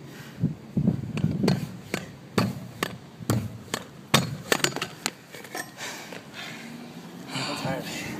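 Vurtego V3 compressed-air pogo stick bouncing on concrete: a run of sharp knocks, about two a second, for the first five seconds or so as its foot strikes the ground.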